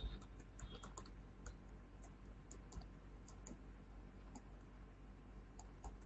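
Faint, irregular light clicks and taps of a pen stylus on a tablet as handwriting is written.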